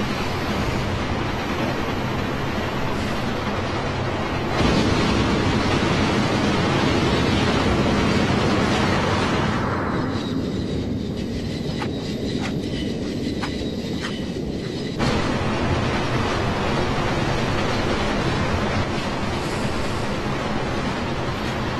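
Steady noise of a moving passenger train heard from inside the carriage. It jumps louder about a quarter of the way in. In the middle it turns muffled, with a few faint clicks, then returns abruptly to full loudness.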